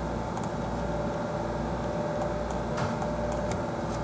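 Steady low hum of room and computer background noise, with a few faint computer mouse clicks in the second half as beams are picked on screen.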